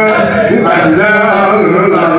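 Background music: a man singing a wavering, gliding melody over a steady low drone, in a Middle Eastern style.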